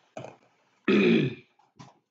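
A man clearing his throat.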